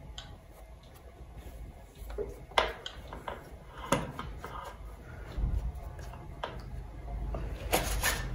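Scattered light clicks and knocks of bicycle parts being handled as the handlebar and stem are fitted onto the steerer tube, over a steady low hum.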